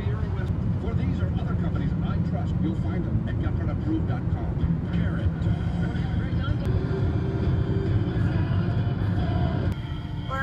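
Road and engine noise inside a car's cabin at highway speed: a steady low rumble.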